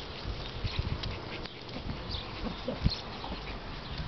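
Soft, irregular low thumps and rustling as a puppy runs through the grass close by, with a few faint, short high chirps.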